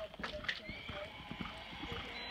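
Horse galloping hard across a dirt arena, its hooves thudding in quick uneven beats, with people's voices calling over it.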